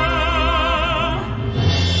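Operatic singing voice holding one long note with wide, even vibrato over instrumental accompaniment. The note ends a little past a second in and the accompaniment moves to a new low sustained chord.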